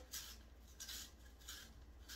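A hand-held peeler scraping the skin off an apple in short strokes, about three faint scrapes roughly two-thirds of a second apart.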